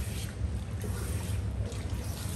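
Water running through long hair and splashing into a salon shampoo basin during a hair wash, over a low steady rumble.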